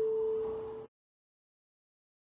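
An electronic chime tone, a single clear pitch, ringing out and slowly fading, then cut off abruptly just under a second in.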